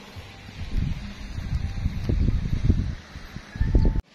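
Wind buffeting the microphone in irregular gusts, strongest about two seconds in and again just before the end.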